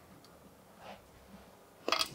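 Near silence of a quiet room, with a faint soft sound about a second in and a short sharp click just before the end.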